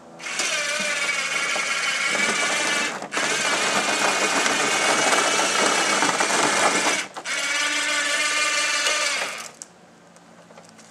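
Electric go-kart lift stand's motor running with a steady whine as it raises the kart, in three spells with two short breaks, about 3 and 7 seconds in, before stopping near the end.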